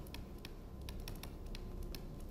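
Stylus tapping and scratching on a tablet screen while handwriting a word: a series of faint, irregular light clicks.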